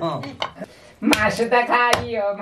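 A heavy curved knife chopping raw chicken on a wooden chopping block, about four sharp strikes.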